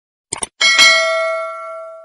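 Sound-effect bell ding: a short click, then a bright bell strike struck twice in quick succession that rings on and fades out over about a second and a half.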